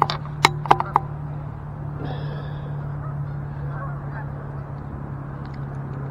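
Geese honking: a quick run of short, loud honks in the first second, then a few fainter ones later. A steady low hum runs underneath.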